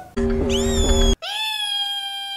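Music with a steady beat, with a short rising squeal about half a second in. Just after a second in the music cuts off and a long, high meow-like cry rises and then holds steady.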